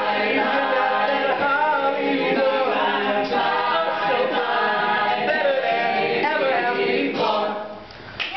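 A mixed a cappella group of male and female voices singing in close harmony with no instruments, a lead voice over the backing parts. The singing ends about seven seconds in.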